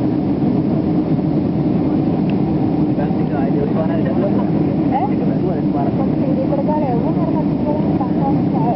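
Steady drone of an airliner in flight heard inside the passenger cabin: jet engine and airflow noise. Faint voices murmur in the background from about three seconds in.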